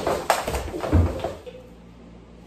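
A few heavy thuds and knocks in quick succession during the first second and a half, then a faint steady hum.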